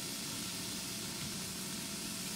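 Steady, even kitchen background hiss with no distinct knocks or clatter.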